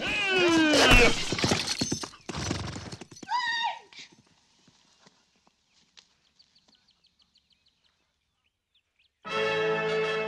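A horse whinnying loudly with hoofbeats in a film soundtrack, followed by a short falling cry. It then goes almost silent for about five seconds before music starts near the end.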